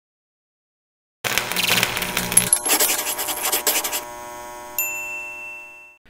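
Animated logo intro sting: after about a second of silence, a loud, dense burst of sound effects and music with many clicks, settling into a held chord with a bright ding that rings and fades out.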